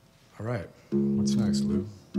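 Ukulele strummed between songs: a single chord rung out about a second in and held for under a second, while the player checks his tuning before retuning the instrument.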